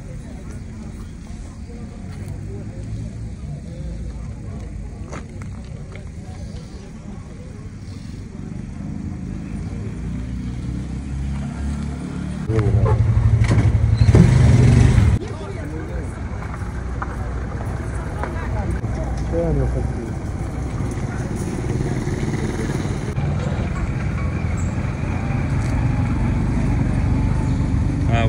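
Background chatter of people in an open-air market over a steady low rumble. About halfway through, a louder low rumble comes in abruptly for a couple of seconds and cuts off.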